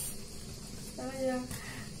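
Wire hand whisk stirring flour and cocoa into wet cake batter in a plastic bowl, a faint scraping. About a second in, a short voice sound comes in, lasting about half a second.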